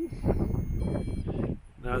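Low rumble of wind on the microphone, with a faint, brief high electronic beep about a second in from a REM pod being reset.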